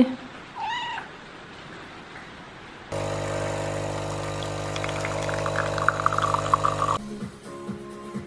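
A cat gives one short meow about half a second in. From about three seconds in, an automatic espresso machine runs, its pump humming steadily for about four seconds while coffee streams into a mug, then stops suddenly. Music from a television follows near the end.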